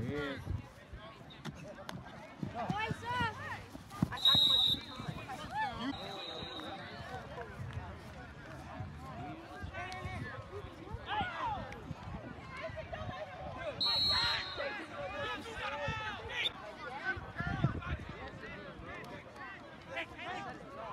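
Voices shouting and talking from the sidelines of a football game, with short, shrill whistle blasts: a loud one about four seconds in, a fainter one around six seconds, and another near fourteen seconds.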